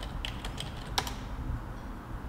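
Computer keyboard being typed on: a few irregular key clicks, the loudest about a second in.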